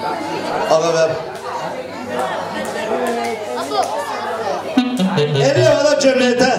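A man's voice amplified through a microphone and PA speakers, with crowd chatter and some music underneath.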